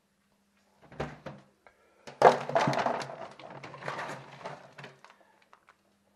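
A plastic pet-food bin knocked open, then dry dog kibble rattling and clattering as it is scooped into a small metal bowl for about three seconds.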